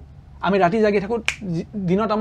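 A single sharp finger snap about a second and a quarter in, over a man talking.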